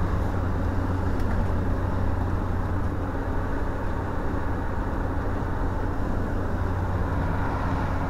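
Cabin noise of a campervan driving at road speed: a steady, deep engine and road drone with tyre hiss above it.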